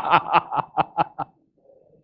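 A man laughing into a headset microphone: a run of short breathy laughs, about five a second, fading out about a second and a half in.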